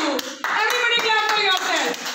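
Hand clapping: a run of sharp claps, mostly in the first second, over voices chanting or singing.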